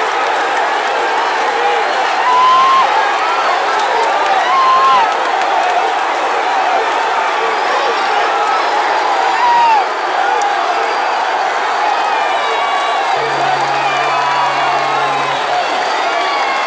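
Large arena crowd cheering and shouting throughout a boxing bout, with short whistles and yells over the din, swelling a few times. A low steady tone sounds for about two seconds near the end.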